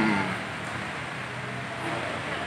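Steady outdoor street ambience: an even hiss with traffic in the background, after a man's drawn-out "um" trails off at the start.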